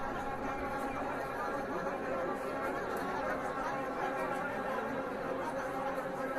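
Many people talking at once: a steady, overlapping crowd chatter with no single voice standing out.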